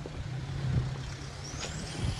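Road vehicle engine running, a steady low hum, with a thin high whistle rising steadily in pitch near the end.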